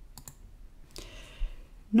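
A few faint clicks from operating the computer, two close together near the start and one about a second in.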